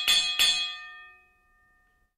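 A bell sound effect for a clicked notification bell, struck several times in quick succession, its ringing dying away about a second in.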